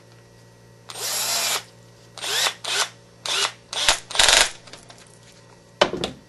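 Cordless drill-driver with a hex bit tightening screws into a plastic RC-car bulkhead brace: one longer run of the motor, then five short bursts as the screws are snugged down, the pitch dipping and rising as the screw takes load. A single sharp knock near the end.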